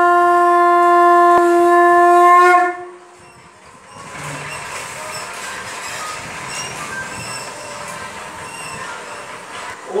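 Conch shell (shankha) blown in one long, steady note that stops about three seconds in, followed by quieter mixed room noise.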